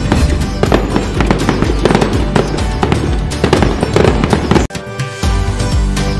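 Firework sound effects, many rapid bangs, over festive background music. The bangs stop abruptly with a brief drop-out a little before the end, after which the music carries on alone.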